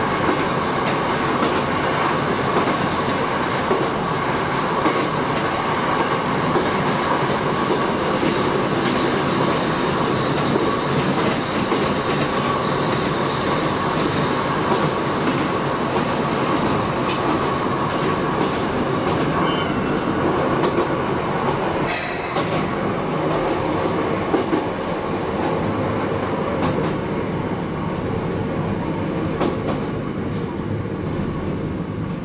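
Shin-Keisei 8000 series electric train running, heard from the driver's cab: steady rolling noise of wheels on rail with clickety-clack over rail joints and a steady whine. A short high squeal comes about 22 seconds in, and the running noise eases slightly near the end as the train slows.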